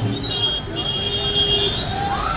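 Street noise with voices, and a horn sounding steadily for about a second in the middle.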